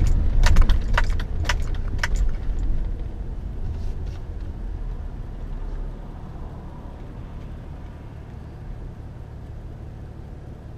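Car cabin sound of a car driving at night: low road and engine rumble, with sharp clicks about twice a second for the first two seconds. The rumble dies down as the car slows and stops at a red light about six seconds in, leaving a quiet low idle hum.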